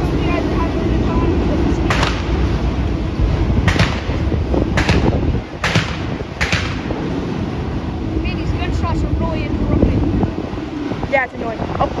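Freight train of autorack cars passing through a grade crossing: a loud, steady rumble of wheels on rail, mixed with wind on the microphone. About five sharp clacks come between two and six and a half seconds in.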